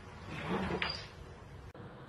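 Snooker balls rolling across the cloth and knocking together, with one sharp ringing click of ball on ball just under a second in.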